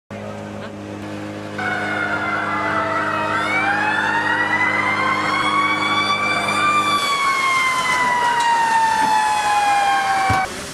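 Fire engine sirens wailing, two overlapping tones that start about a second and a half in, rise slowly and then fall. Under them a steady low hum runs until it cuts off about seven seconds in.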